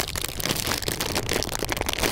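Close, dense crackling rustle of a fur-trimmed hat and a crinkly foil packet being handled right against the phone's microphone.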